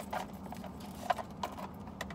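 A few light, irregular clicks and taps as a small saffiano leather wallet-on-chain and its metal chain strap are handled; the sharpest click comes about a second in.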